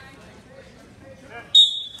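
Referee's whistle blown once, a short steady high blast of about half a second near the end, signalling the wrestlers to start from the referee's position. Faint gym voices come before it.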